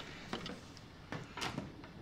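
A few light, irregular knocks and clatters from an embossing heat gun and its cord being picked up and handled, the sharpest about one and a half seconds in; the gun is not yet running.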